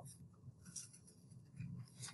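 Near silence: quiet room tone with faint rustling of a pen and paper, a little louder near the end.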